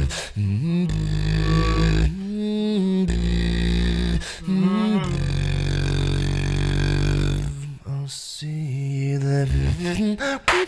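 A cappella vocal music: a man singing long held notes over a deep sustained bass made with the voice, with a few sharp beatboxed percussion hits.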